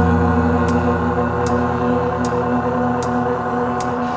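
Live band music: a steady low drone holding one chord, with a sharp tick repeating about every three-quarters of a second.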